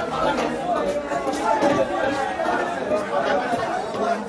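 Chatter of many voices, with short knife scraping strokes as the scales are scraped off a large rohu fish.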